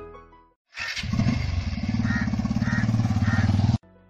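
Piano music fading out, then a motorcycle engine starting and running with a fast, even firing pulse. It cuts off suddenly just before the end.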